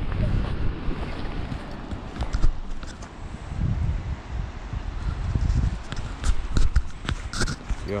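Footsteps and handling noise from a hand-held camera carried down a trail: irregular low thumps with scattered short clicks and crunches.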